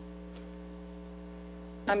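Steady low electrical mains hum with several overtones on the meeting's microphone feed. A voice begins with an "um" right at the end.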